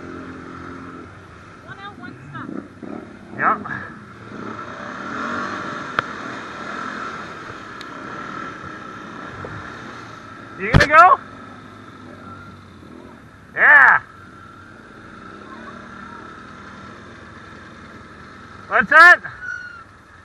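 Can-Am ATV engine running steadily at low speed under a haze of wind and tyre noise, cut by three short, loud shouts from the riders: one about halfway through, one a few seconds later and one near the end.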